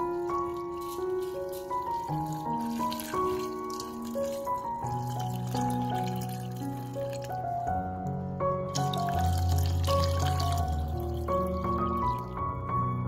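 Water poured from a glass jug into a stainless steel pot of fruit and seeds, the pouring heard mostly in the first few seconds and again toward the end, under louder background piano music.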